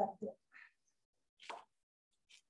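A woman's voice finishing a word, then quiet broken by a faint short pop about one and a half seconds in.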